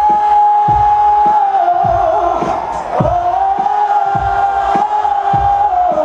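Loud live concert music over a festival PA, heard from inside the crowd: two long held notes over a steady bass beat, with the crowd cheering and shouting underneath.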